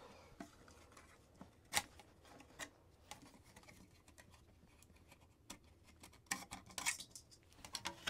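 Steel pig-faced bascinet being handled on the wearer's head: faint scrapes and a few sharp metal clicks, with a cluster of clicks near the end as the visor is taken off.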